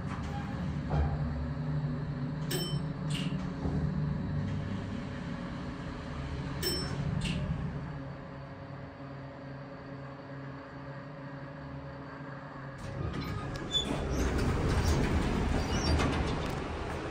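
Toledo hydraulic elevator car travelling: a steady low hum with a few light clicks. The hum stops about thirteen seconds in as the car lands, and the doors slide open near the end.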